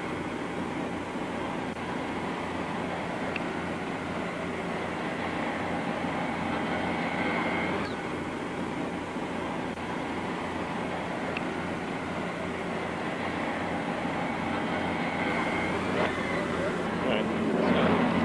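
Steady aircraft noise on an airport apron, a continuous roar without clear breaks, with indistinct voices faintly beneath it.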